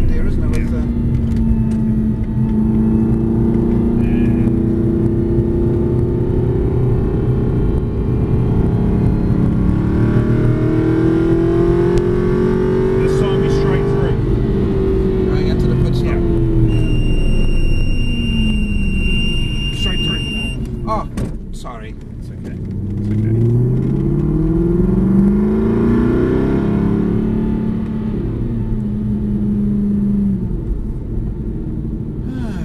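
V8 Aston Martin Vantage engine heard from inside the cabin, revs rising and falling as it is driven on track. The engine note falls away as the car slows a little after twenty seconds in, then rises again through an upshift before settling. A steady high beep sounds for a few seconds in the middle.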